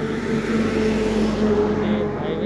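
A motor vehicle's engine running with a steady hum, and a louder rush of noise swelling through the middle and easing off near the end.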